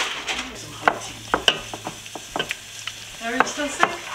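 Serving spoon scraping and clacking against a steel pot and a ceramic baking dish as hot potatoes are spooned out, with several sharp clicks over a faint hiss.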